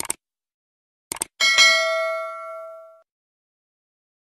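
Subscribe-button sound effect: quick mouse-click sounds at the start and again just after a second, then a notification-bell ding that rings out and fades over about a second and a half.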